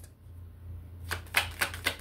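Tarot cards being handled and shuffled in the hand. A quick run of crisp clicks starts about a second in.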